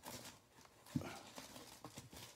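Bagged and boarded comic books being flipped through in a cardboard box: faint rustling of plastic bags, with one dull knock about a second in and a lighter tick near the end as the books tip against each other.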